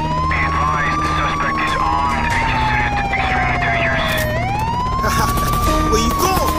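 Hip hop beat with a sampled wailing siren: the tone rises, falls slowly for about three seconds, then rises again near the end, over a steady bass line.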